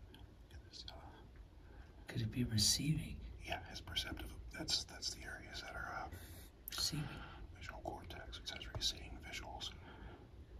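People speaking in whispers and low voices, in short broken phrases, over a steady low hum.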